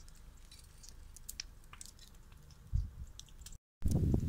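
Scattered faint crackling from burning rubbish over a low wind rumble on the microphone. A dull thump comes near the end, then the sound briefly drops out and returns as louder rumbling.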